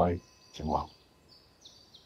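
A man's voice repeating short drawn-out 'ee' syllables, mimicking the stomach churning. One syllable ends at the start and another comes just under a second in, followed by a pause. Faint high-pitched tones sound near the end.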